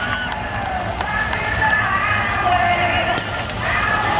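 A field of sprint cars' V8 engines running together at slow pace-lap speed: a steady low rumble with several engine notes gliding up and down.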